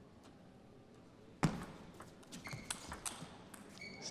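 Table tennis ball clicks: one sharp hit about a third of the way in, then a few lighter taps, with two brief high squeaks in the second half.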